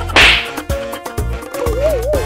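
A sharp whip-crack sound effect with a short hissing tail just after the start, over upbeat background music with a steady beat. Near the end a wobbling tone begins, rising and falling.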